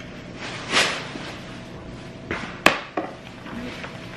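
Pages of a cookbook being turned, a few soft papery swishes, with one sharp knock a little past halfway as the book is handled.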